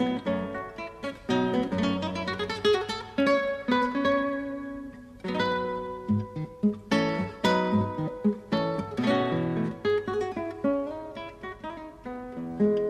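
Solo classical guitar, its strings plucked with the fingernails, playing a piece that mixes quick runs of single notes with full chords struck all at once.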